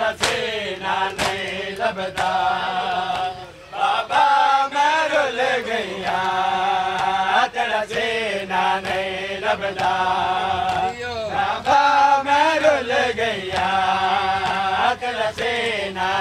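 A male voice chanting a noha (mourning lament) through amplification, with the sharp slaps of men beating their chests (matam) in a steady rhythm.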